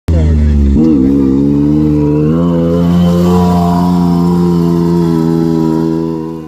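Side-by-side UTV engine running hard on a dirt track; its pitch dips about a second in, then climbs in two steps and holds steady.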